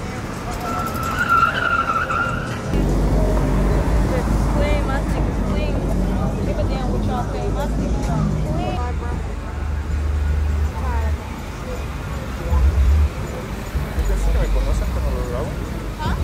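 Cars passing on the street with bass-heavy hip-hop playing, its deep bass pulsing in changing blocks from about three seconds in, with rapped vocals over it. A brief high-pitched squeal is heard about a second in.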